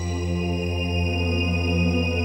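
Background music of long held notes over a steady low drone, with no beat.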